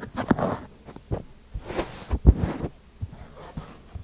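Fingers tapping and pressing on kinetic sand packed into a wooden box: irregular soft, low thumps with a short crumbly rustle of sand, the loudest thump a little past halfway.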